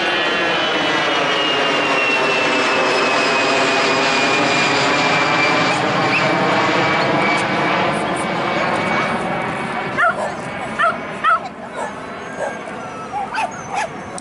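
A jet aircraft passing low overhead: a steady loud whine slowly falling in pitch, fading about ten seconds in. Then a dog barks in several short, sharp yaps.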